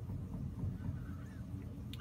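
Straight razor rubbed flat in small circles on a wet Shapton Pro 8K water stone carrying a slurry: a faint, low, steady rasp of steel on stone.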